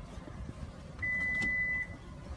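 A single steady electronic beep, held for just under a second, from an SUV's power liftgate as its close button is pressed with a foot, signalling that the tailgate is about to close.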